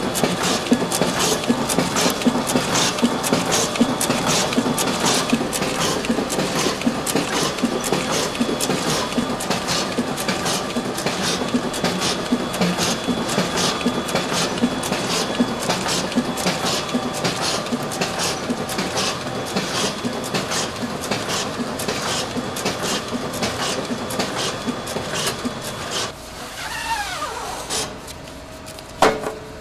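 Xanté Impressia digital press with its Enterprise high-speed feeder and output conveyor printing #10 envelopes at about 78 per minute, a steady run of regular clicks over a mechanical hum. Near the end it quietens, with a falling whine as it winds down.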